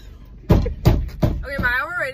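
Three sharp knocks about a third of a second apart, followed by a girl starting to talk.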